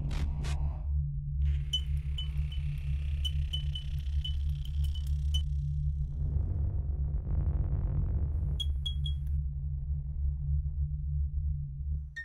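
Electronic intro music for an animated logo, built on a steady pulsing bass, with a run of short high chirps through the first few seconds and three more blips a little past the middle. It cuts off suddenly at the end.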